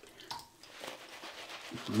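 Faint, irregular splashing and dripping as a synthetic-knot shaving brush is dipped in a sinkful of cold water, to thin a lather that has clogged the brush. A man starts talking near the end.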